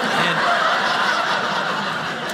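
Audience laughing together: a burst of laughter that comes in right at the start and carries on steadily.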